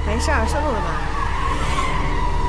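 A short line of speech, then car tyres squealing in one long, nearly steady high tone over a low vehicle rumble.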